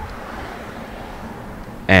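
Low, steady background noise with no distinct event, in a pause between speech; a man's voice starts again near the end.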